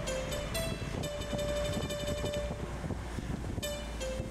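Background music: a melody of plucked notes, with one note held in the middle, over a steady low rumble.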